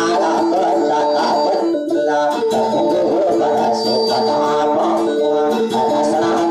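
Music on a plucked string instrument, a guitar-like picking pattern that repeats steadily over held notes.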